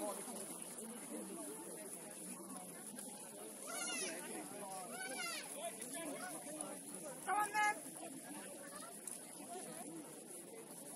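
Distant voices of players and spectators calling out across a rugby pitch, with a few high-pitched shouts and two short, loud calls near the end.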